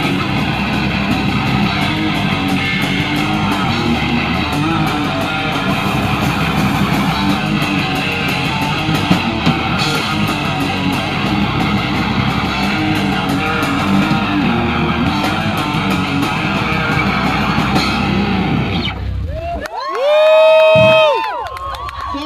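Live rock band playing amplified electric guitars and drums; the music stops about 19 seconds in. A loud held whoop follows, from a person's voice.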